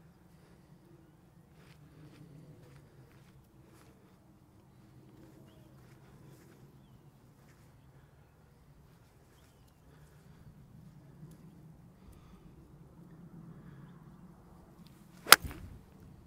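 A golf wedge striking the ball once, a single sharp crack near the end: a thinned shot, caught low on the clubface.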